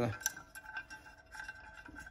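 Small clicks and handling noise of a generator stator's wiring and rubber cable grommet being worked by hand inside an aluminium engine side cover, with one sharper click just after the start.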